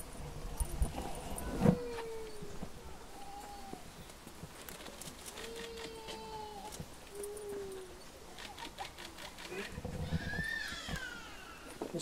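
Hushed outdoor crowd: faint scattered voices and brief murmurs, with a few light clicks and shuffles, one sharper click near the start.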